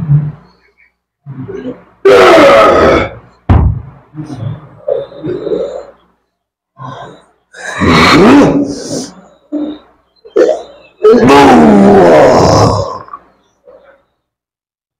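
A man crying out in loud, wordless roars and groans: three long drawn-out cries, with shorter grunts between them. The cries come from a man being treated in a healing session against black magic (santet), a reaction taken there for possession.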